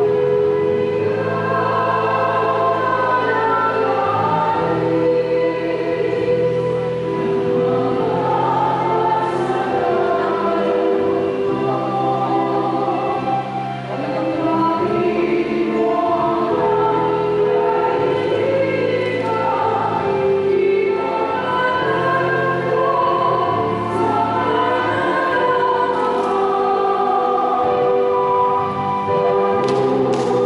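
A choir sings a slow hymn over sustained low accompanying chords that change every few seconds.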